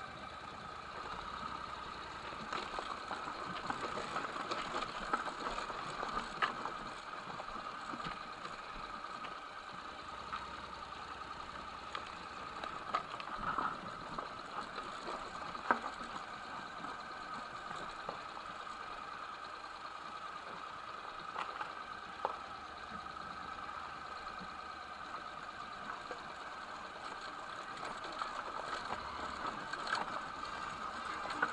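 Honda motorcycle engine running steadily at low speed, with scattered sharp clicks and knocks as the bike rolls over rough ground beside the rails.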